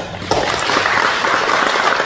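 Audience applauding, swelling within the first half second into steady clapping.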